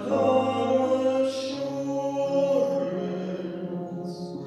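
Two men singing a duet in long, held notes with piano accompaniment.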